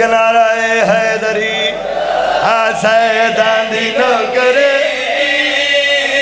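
A group of men chanting a sung refrain together into microphones, with long held notes, as in a majlis recitation.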